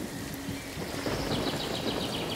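Steady rain ambience, with a rapid run of short high chirps joining about halfway through.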